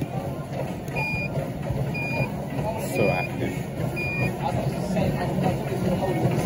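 Four short, high-pitched electronic beeps, evenly spaced about a second apart, over a steady background of indistinct voices.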